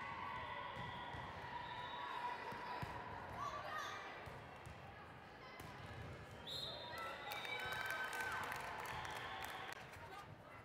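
Indoor volleyball rally in a large gym: the ball is struck and hits the floor several times as short sharp knocks, among players' voices calling out across the court.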